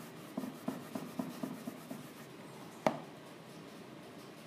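A rubber eraser rubbed hard back and forth on a tabletop, about eight quick scrubbing strokes at roughly four a second, then a single sharp tap a second later.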